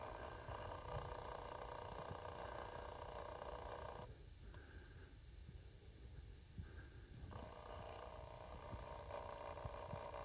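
Faint wind buffeting the microphone, with a steady whirring hum from a camcorder's zoom motor. The hum runs for the first four seconds, stops, and starts again about seven seconds in as the shot zooms in.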